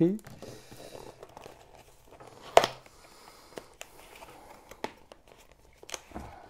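Cardboard box being opened by hand: soft rustling and scraping of the carton, one sharp tearing snap about two and a half seconds in, then a few light clicks and taps.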